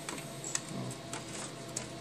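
Light, scattered clicks and small knocks of a desktop PC's motherboard being pushed and slid loose in its metal chassis tray.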